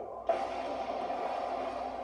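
Movie-trailer soundtrack played through a tablet's small speaker: a sudden hit about a quarter second in, then a steady held tone under the title card.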